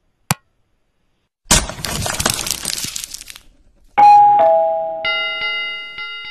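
Sound effects of an animated subscribe-button reminder: a single click, then a crackly whoosh about two seconds long, then a falling two-note ding-dong chime followed by a bell with several ringing tones that slowly fades out.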